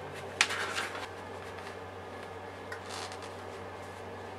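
A paper instruction booklet being handled and laid flat: a sharp tap about half a second in, a short paper rustle, then a faint steady hum with a brief rustle near the end.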